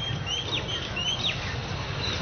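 A bird chirping: a quick run of short, high chirps, some rising and some falling in pitch, over a low steady background hum.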